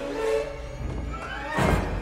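A woman screaming in terror over a horror film score, with a rising swell that ends in a loud, deep musical hit about three-quarters of the way through.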